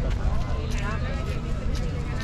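Passers-by talking in ordinary voices, with walking footsteps tapping on the paving over a steady low outdoor rumble.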